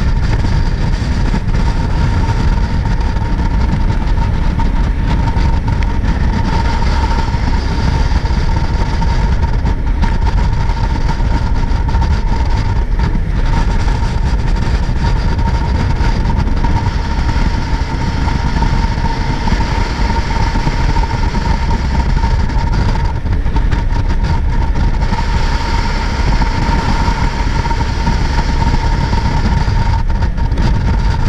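Jet boat running at speed on a river: the loud, steady rumble of the engine and water jet, with a steady whine over it.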